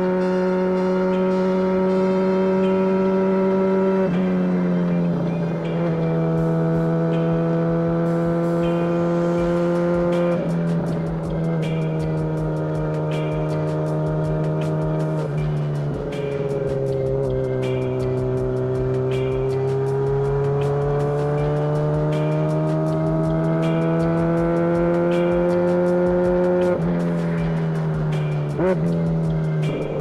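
MV Agusta F4 RR inline-four engine under load through an SC Project aftermarket exhaust, heard from the rider's seat while cruising. The note holds steady, steps down sharply in pitch a few times as it shifts up, and climbs slowly as the bike accelerates in gear in the second half.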